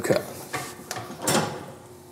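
A few light metallic clicks and clanks from the mechanism of a Strive bicep curl machine as it is worked, just after its adjustable cam has been changed.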